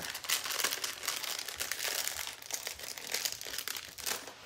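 Thin clear plastic bag crinkling as it is handled, a steady run of fine crackles that stops abruptly at the end.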